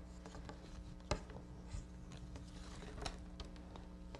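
Quarter-inch flat reed rustling and clicking against oak hoops as it is woven over and under and pulled tight. There are a few light sharp clicks, one about a second in and two close together near three seconds.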